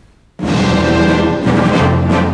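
An orchestra strikes up a ceremonial march with brass and timpani. It starts suddenly and loud about half a second in, after a near-quiet pause.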